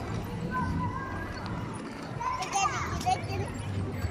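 A young child's high-pitched voice babbling and squealing without words, busiest a little before the end, over a steady low rumble.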